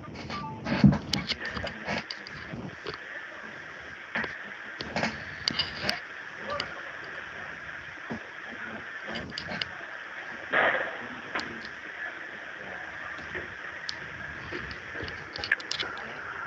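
Noisy telephone line: steady hiss with scattered crackles and clicks and a few short garbled bursts, the sound of a call that is breaking up.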